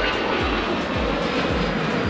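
Jet engines of an Airbus A320 running at climb power just after takeoff, a steady dense noise, with background music carrying a low thumping beat about twice a second.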